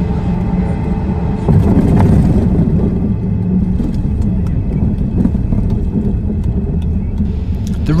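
Airliner cabin during the landing roll: a loud, steady rumble of the jet engines and runway noise, swelling about a second and a half in, with scattered nervous clapping from passengers.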